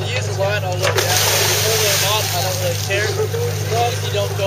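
Steady low hum of a dive boat's engine running, with people talking over it. About a second in, a rushing hiss sounds for roughly a second and a half.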